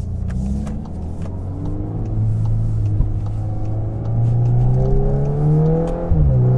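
VW Golf R Mk8's turbocharged 2.0-litre four-cylinder pulling the car up to speed, heard from inside the cabin. The engine note rises slowly as the car gathers speed, then drops sharply at a quick upshift near the end.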